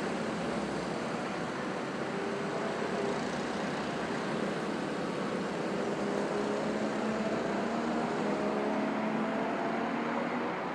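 Go-kart engines running on the circuit out of view, their faint tones held under a steady noisy hiss and climbing slowly in pitch in the second half.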